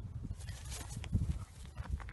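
A whippet-greyhound lurcher catching a rabbit in the grass: a short, noisy burst of struggle about half a second in, then a few sharp knocks, over a steady low rumble of wind on the microphone.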